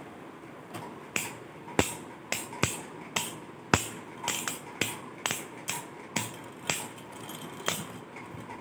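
Two Beyblade Burst spinning tops colliding in a plastic stadium: sharp plastic clacks at irregular intervals, roughly two a second, as the tops knock into each other and the stadium wall.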